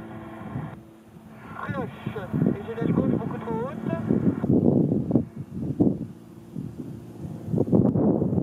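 Extra 300L aerobatic plane's engine droning steadily in the distance, heard under people talking nearby.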